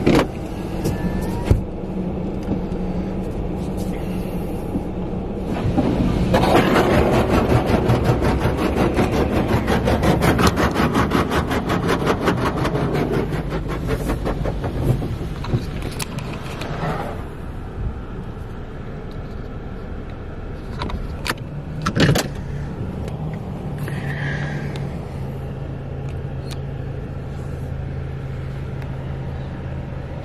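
A car engine running at low idle while the car rolls into an automatic wash bay. About six seconds in, a loud rushing water spray starts and lasts about ten seconds, most likely the undercarriage wash jets under the slowly moving car. Two sharp clicks follow a few seconds after it stops.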